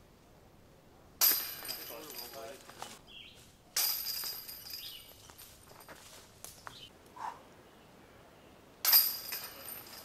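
Chains of a disc golf basket rattling as putted discs hit them, three times: each a sudden crash of jangling metal that rings on and fades over a second or two, the last one the loudest.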